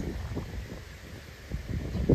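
Wind buffeting the microphone in uneven low gusts, growing stronger near the end.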